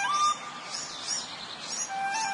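Small songbird chirping: short, high chirps repeated a few times a second. The flute-like melody it sits in drops out after one brief note at the start.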